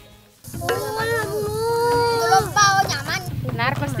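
Red beans and grated coconut for serundeng frying in oil in a wok, sizzling while being stirred with a wooden spatula; the sizzle starts about half a second in and stops just after three seconds. A long held high note sounds over the frying for about two seconds, and speech follows near the end.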